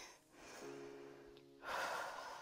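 Soft background music holding a steady chord for about a second, then, about a second and a half in, a woman's audible breath in.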